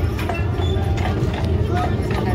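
A horse's hooves clip-clopping at a walk on brick paving as it pulls a streetcar, with people talking around it.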